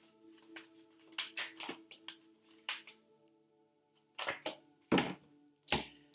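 Soft background music holding steady sustained tones, with a run of short clicks and taps from tarot cards being handled and laid on a table; the taps pause briefly in the middle and come louder near the end.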